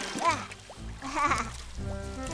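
Cartoon background music with short vocal cries from an animated character: a loud one just after the start and a quavering one about a second in.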